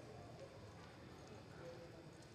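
Faint hoofbeats of a horse loping on soft arena dirt, with faint voices in the background.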